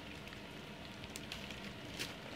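A litter of Goldendoodle puppies eating soft puppy food from a shared pan: many mouths lapping and chewing at once, a dense patter of small, irregular wet clicks.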